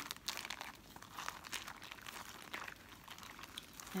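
Plastic zip-top bag crinkling irregularly as hands squeeze and knead a flour, salt and water paste inside it.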